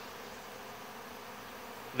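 Steady buzzing of a large crowd of honey bees flying around and feeding at open sugar-water bucket feeders.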